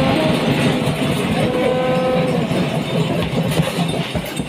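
An audience applauding: a dense, steady clatter of many hands.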